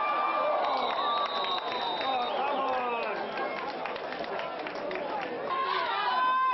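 Crowd of spectators at a football game, many voices talking and calling out over one another.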